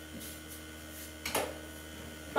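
A wall light switch clicks once, about a second and a quarter in, turning the room lights back on. A faint steady hum runs underneath.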